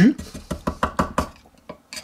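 Oyster shell and oyster knife clicking and scraping against each other and the wooden cutting board while the shucked oyster is tipped to drain its juice: a quick run of small sharp clicks over about the first second, then a few fainter ones near the end.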